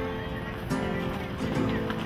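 Background music from a slow song, with the instrumental accompaniment holding steady notes between sung lines.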